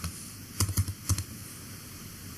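Computer keyboard keystrokes: a quick run of about six clicks in the first second, typing a number into a form, then faint steady hiss.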